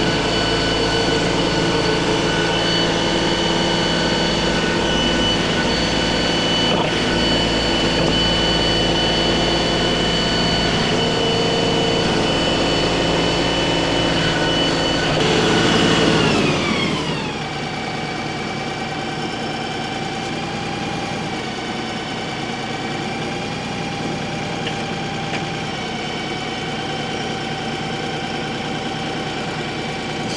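LS compact tractor's diesel engine running at high throttle to drive a hydraulic auger, with a steady high whine over it. About fifteen seconds in it is throttled back and the pitch falls smoothly, settling to a steady lower idle.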